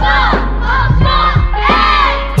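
A large group of children shouting a chorus response together over a hip-hop beat with a steady bass line.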